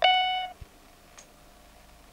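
A single steady electronic beep, one unchanging pitch, lasting about half a second, from a small electronic gadget. It is followed by faint handling sounds: a dull knock and then a small click.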